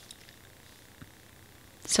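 Quiet room with faint paper-handling sounds, including a light tap about a second in, as a sticker-book sheet is lifted and held up.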